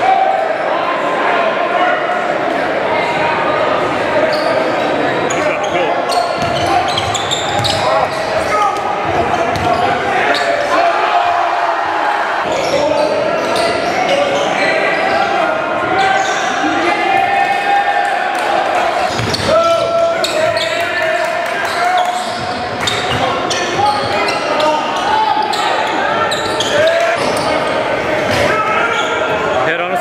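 Live gym sound at a basketball game: a basketball bouncing on the hardwood court amid indistinct voices, echoing in a large hall.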